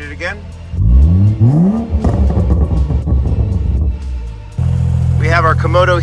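Tuned Toyota Supra B58 inline-six, running E85 with a Garrett turbo, revved hard. About a second in, the pitch climbs quickly and stays high and loud for a couple of seconds before dropping away. Near the end a steady low engine drone takes over.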